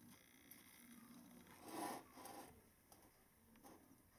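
Near silence: quiet room tone, with one faint brief sound about two seconds in.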